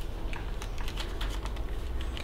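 Tissue paper crinkling in the hands: a quick, irregular run of small crackles.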